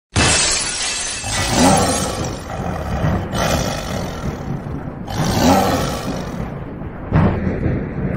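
Intro sound effect: big-cat roars over a loud crashing, shattering noise that starts suddenly. Three roars rise and fall, about a second and a half in, about five and a half seconds in, and near the end.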